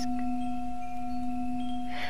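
A singing bowl's tone held steady as a background drone, with a few faint, brief high tones over it.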